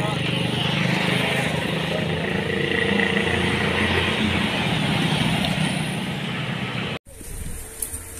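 Outdoor road noise: a steady wash of passing traffic and engine hum with voices in the background, cutting off abruptly about seven seconds in.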